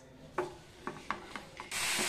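Wooden spatula scraping through mint paste in a steel pan, a few short scrapes. Near the end a steady sizzle of the paste frying starts abruptly.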